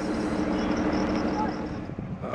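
A vehicle engine running steadily in street traffic, a low even hum over road noise, easing off near the end.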